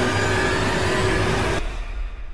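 Loud stock sound effect of an end-screen 'Thanks for watching / Subscribe' animation: a dense rushing noise over a low rumble. Its upper part cuts off suddenly near the end while the rumble carries on.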